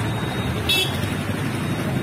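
Steady street traffic noise, with a short high-pitched vehicle horn toot less than a second in.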